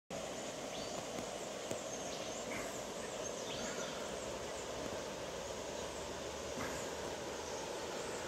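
Steady rushing of a shallow river running over stones.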